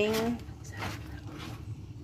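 Slotted spatula stirring a boiling cream sauce in a nonstick frying pan: faint, irregular scrapes and stirs.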